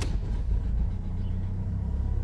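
Ford Galaxy engine just started on the ignition key alone, with no throttle, catching at the start and then running at a steady idle, heard from inside the cabin.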